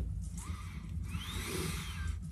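A man sniffing at a small paper tea sachet, a soft breathy intake through the nose that builds in the second half. A faint low hum runs steadily underneath.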